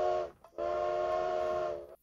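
Recorded steam train whistle played back from a notebook audio player: one whistle blast ending shortly after the start, a brief break, then a second steady blast that stops just before the end.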